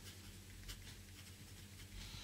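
Faint scratching of a pen writing a word on paper, short strokes in quick succession, over a steady low electrical hum.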